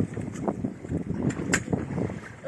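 Shallow rock-pool water sloshing and splashing lightly around a child's moving legs and hands, with small irregular ticks and one sharper splash about one and a half seconds in. Wind buffets the microphone.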